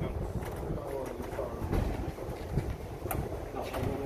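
Indistinct voices of several people talking in the background, with a few sharp clicks and low thumps from handling nearby.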